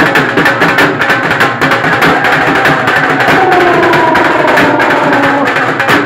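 Two dhol drums played live with sticks in a fast, dense bhangra rhythm. From about halfway, a held, slowly falling pitched tone sounds over the drumming.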